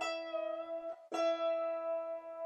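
Wire-strung early Irish harp: two E strings an octave apart are plucked and left ringing together, twice, about a second apart, as the upper E is tuned to the lower E by octaves.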